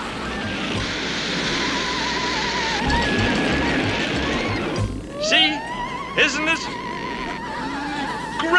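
Cartoon rocket-shuttle takeoff sound effect: a rushing roar under a wavering electronic tone for about five seconds, then a rising whine that levels off and holds.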